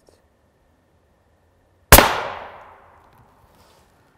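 A single suppressed .300 Win Mag rifle shot about two seconds in, an M2 armor-piercing round fired into a ceramic Level IV armor plate. The sharp report dies away over about a second.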